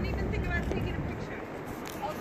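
Small children's high voices chattering in short bits over a steady low rumble of city traffic.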